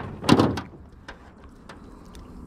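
A loud knock and clatter against the hull of a small metal jon boat about a quarter second in, followed by a few light taps.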